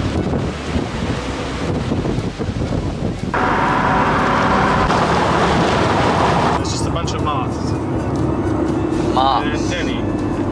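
Strong wind buffeting the microphone for about three seconds, then, after a cut, the steady road noise of a car driving, heard from inside the cabin.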